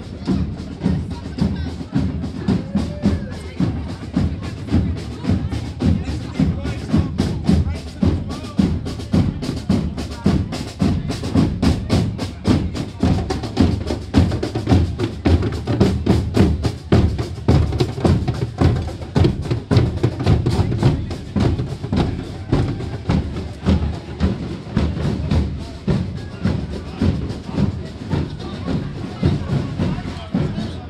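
Drums playing a steady, driving beat with bass and snare strokes, mixed with a crowd's voices.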